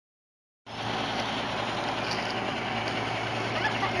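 An engine running steadily, a constant low hum under an even rush of outdoor noise, starting just under a second in.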